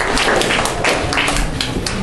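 A room of people applauding: many hand claps in an irregular patter.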